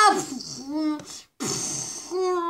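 A person's voice making mouth sound effects: a held vocal cry breaks off with a falling pitch, then comes spluttering, raspberry-like "pfft" blowing mixed with short vocal noises, with a brief pause partway through.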